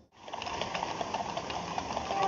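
Quick, clicking clip-clop of carriage horses' hooves, about seven or eight clicks a second, starting just after a brief drop-out at the start.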